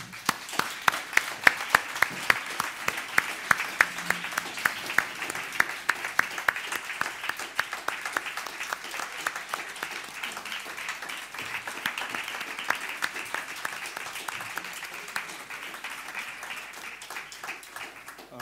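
Audience applauding, starting suddenly. A few loud, sharp claps stand out close by in the first seconds, and the applause eases a little toward the end.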